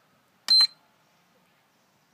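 A single short, high-pitched beep from an iMAX B6AC balance charger about half a second in, the charger's acknowledgement of a button press on its front panel.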